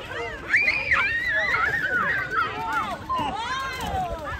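Several excited children's voices shouting and squealing over one another, high-pitched and without clear words, in the middle of a water balloon fight.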